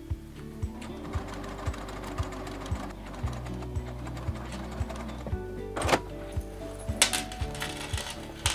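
Juki sewing machine running a short seam to stitch a bag lining's turning gap closed, under background music with a steady beat. A few sharp clicks come near the end.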